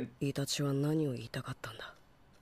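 Speech only: a man's voice says one short line, the anime's Japanese dialogue.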